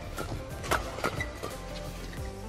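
Badminton rackets striking a shuttlecock in a fast doubles rally: a few sharp hits, the two clearest about a third of a second apart near the middle.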